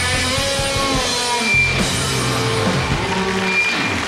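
Live rock band playing a song, with electric and acoustic guitars over drums and held, bending melody notes.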